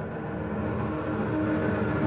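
Viola, cello and double bass bowing sustained notes together in a dense, grinding cluster that swells louder.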